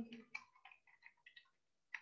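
Faint computer keyboard keystrokes: a quick, irregular run of light clicks as words are typed, stopping a little before the end.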